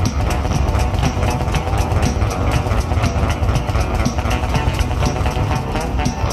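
Electric bass guitar played fingerstyle over a drum backing track: a busy low bass line with a steady drum beat.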